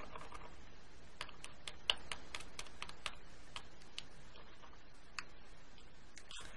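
Faint, irregular light clicks and ticks, about a dozen, as the tip of a patina squeeze bottle and metal tweezers tap against a small filigree metal leaf charm while the patina is dabbed on. The sharpest click comes about two seconds in.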